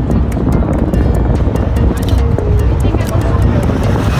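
Music with a steady beat and singing, over a continuous low rumble.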